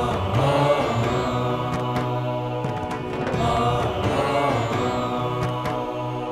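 Devotional background music: a low voice chanting a mantra in long held notes over a steady drone.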